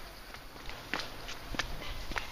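Footsteps on stone-flag paving, a few steps a little over half a second apart.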